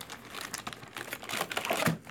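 Small cardboard box handled and its flaps opened: a quick, irregular run of clicks, taps and scuffs of cardboard, busiest in the second half.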